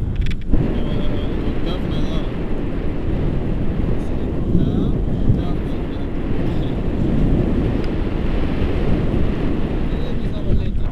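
Wind buffeting an action camera's microphone during a tandem paraglider flight: a loud, steady, low rumble without pauses.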